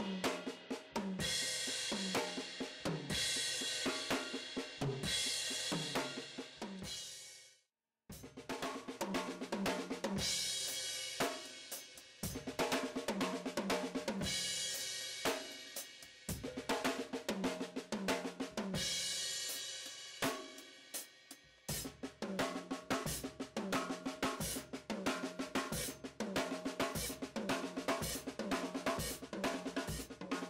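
Drum kit played in fast, dense sticking patterns across snare, toms, hi-hat and bass drum, with cymbal crashes every couple of seconds: paradiddle-based grooves and fills. The playing cuts off abruptly about eight seconds in and starts again straight away.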